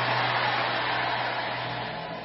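Congregation cheering and shouting in response to a declaration, a dense roar that starts to fade near the end, over a steady low hum.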